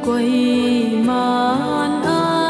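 Slow hymn sung in long held notes that slide from one pitch to the next.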